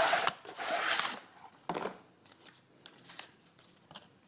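Knife packaging being handled and its grey plastic tray taken out: a rustling, scraping noise for about a second, a shorter scrape a little later, then a few faint clicks.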